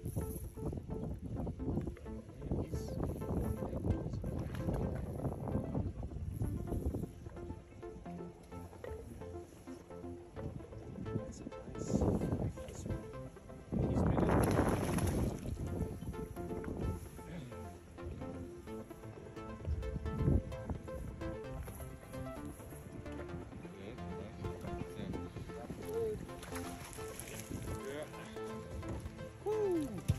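Background music with steady held notes throughout. About 14 seconds in, a short burst of splashing water stands out from the music, as the hooked trout thrashes at the surface.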